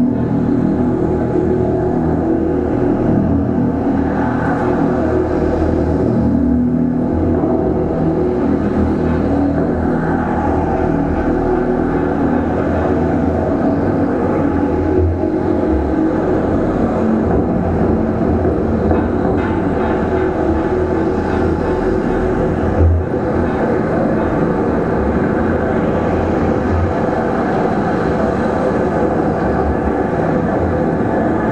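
Experimental electroacoustic performance: a loud, steady drone of layered held tones over a deep rumble, with a brief knock about 23 seconds in.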